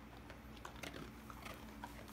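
A dog chewing a treat picked up from the floor after being released from 'leave it': a few faint crunching clicks, mostly in the second half.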